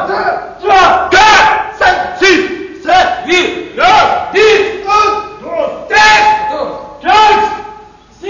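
A line of male recruits counting off in French at roll call, each man shouting his number in turn: a fast string of loud single shouts, about two a second, each dropping in pitch, echoing in a corridor.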